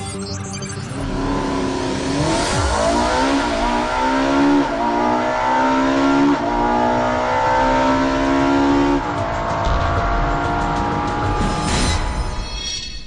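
Ferrari 458 Italia's V8 engine accelerating hard, its pitch climbing through the gears and dropping back at several quick upshifts.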